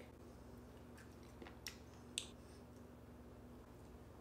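Near silence, with a few faint, short crunches between about one and two seconds in as a frozen cranberry is bitten and chewed.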